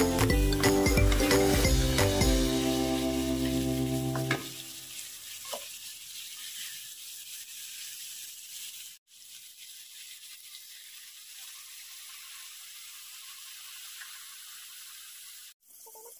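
Background music that stops suddenly about four seconds in, then a steady sizzle of shrimp frying in butter in a wok as a wooden spatula stirs, broken by two brief dropouts.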